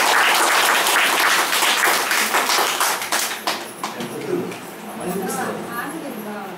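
A room full of children clapping, thinning out after about three and a half seconds, with voices talking over the end.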